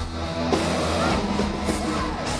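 A live hard rock band playing loud, led by an electric guitar solo with notes that bend up and down in pitch over a steady drum and bass backing.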